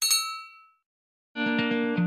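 A bright bell-like 'ding' sound effect rings once and fades out within under a second, the chime of a subscribe-button bell animation. About a second and a half in, background music with plucked guitar begins.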